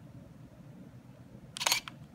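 Canon Rebel XS digital SLR taking a picture: one shutter release about a second and a half in, heard as a quick double click of mirror and shutter.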